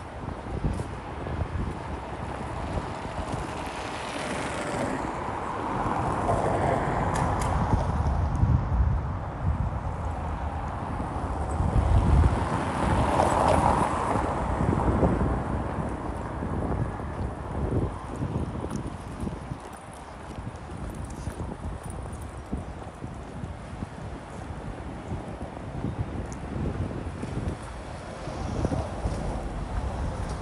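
Street ambience on foot: the walker's footsteps on the pavement with wind buffeting the microphone, and two vehicles passing, one a few seconds in and another about halfway through, each rising and fading.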